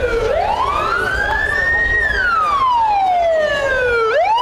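Ambulance siren in slow wail mode: the pitch climbs for about two seconds, falls back for about two, and starts climbing again at the end, over a low rumble.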